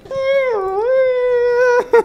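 A man's drawn-out, sung-out "Yeah", held for well over a second at a steady high pitch that dips once and comes back, then cut off near the end.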